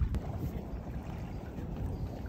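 Low, uneven rumble of wind buffeting the microphone, with the engine of a motorboat coming in slowly toward its trailer underneath.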